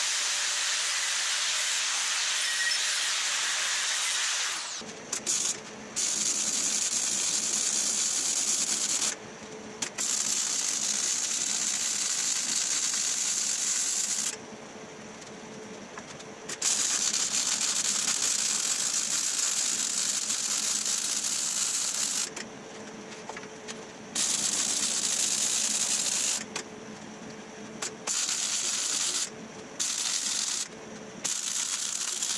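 An angle grinder grinds steel for the first four seconds or so. Then a wire-feed (MIG) welder runs beads on the steel frame in stretches of a few seconds each, with a steady crackling hiss that stops and starts as the trigger is released and pulled again.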